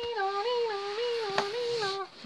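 A person voicing a two-tone ambulance siren, a hummed nee-naw that switches between a higher and a lower note every third of a second or so. A sharp tap sounds briefly about halfway through.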